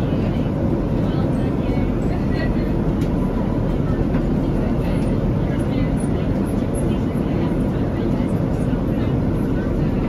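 Jet airliner cabin noise: a steady low rumble of engines and airflow that holds one level throughout, with faint voices in the background.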